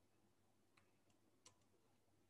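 Near silence: faint room tone with a few soft clicks, the clearest about one and a half seconds in.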